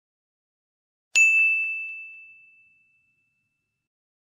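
A single bright bell ding, struck once about a second in and ringing out over about two seconds: a subscribe-notification bell sound effect.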